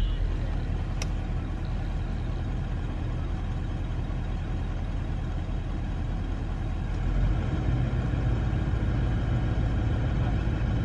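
Car engine idling while stationary, heard from inside the cabin: a steady low hum with a single sharp click about a second in. The engine note steps up slightly and grows a little louder about seven and a half seconds in.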